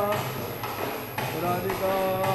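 Devotional kirtan singing breaks off just after the start over a steady low keyboard drone. A few sharp percussive strokes fall about half a second apart in the gap, and the sung line resumes near the end.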